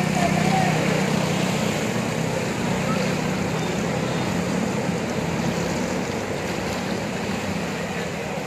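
JCB backhoe loader's diesel engine running steadily as it drives through floodwater, with water washing and sloshing and people's voices in the background.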